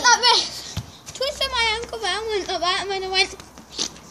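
A child's voice without clear words: a high rising exclamation at the start, then a long, wavering sung or drawn-out call from about a second in to near the end, with a short knock just before the call begins.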